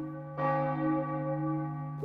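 A single bell tone struck about half a second in and left to ring and fade, over a steady held musical tone.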